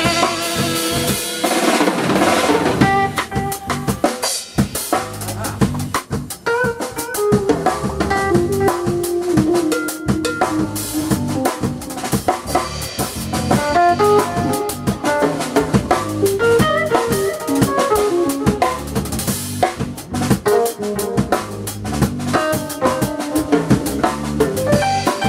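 Live jazz quartet playing: an alto saxophone holds a long note that ends about a second and a half in, then an electric keyboard takes over with quick runs of notes over electric bass and a drum kit.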